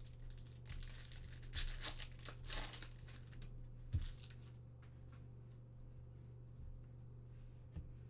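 Foil trading-card pack wrapper being torn open and crinkled, a run of noisy rustles over the first three seconds. A single sharp knock about four seconds in, then only faint handling over a steady low hum.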